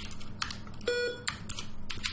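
Computer keyboard keystrokes, several separate clicks, with a short electronic beep about a second in.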